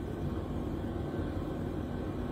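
A pause in speech holding only steady low background hum and hiss, the room tone of the recording, with no distinct events.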